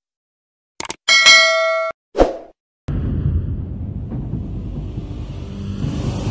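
Subscribe-button animation sound effects: a mouse-style click, then a bright bell ding ringing for under a second, then a thud. From about three seconds in, a steady low rumble begins as the channel's logo intro starts.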